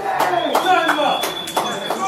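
Voices of a crowd of young men calling out and talking over each other, with a few sharp claps and a thin steady high tone underneath.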